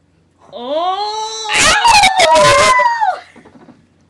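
A girl's long, drawn-out howl: her voice rises in pitch at the start, is held for about two and a half seconds, and is loudest and harsh, distorting, in the middle before it trails off.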